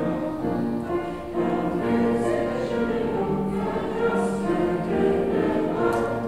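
A mixed choir of men's and women's voices singing a German folk roundelay in harmony, holding long chords.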